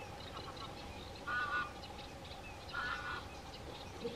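Two short bird calls about a second and a half apart, over faint chirping of small birds.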